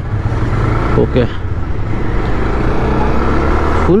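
Bajaj Pulsar 220F's single-cylinder engine running as the bike rides along, heard from the bike-mounted camera with steady wind and road noise that builds slightly.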